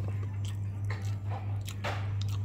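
A person chewing a mouthful of food, with a few short clicks and scrapes of a metal spoon and fork on a plate, over a steady low hum.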